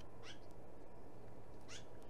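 Two short, high-pitched animal calls about a second and a half apart, each sliding down in pitch, over a steady low background noise.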